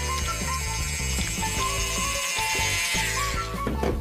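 High whirring of a toy dentist drill working on play-dough teeth, falling in pitch and stopping about three seconds in, over background music.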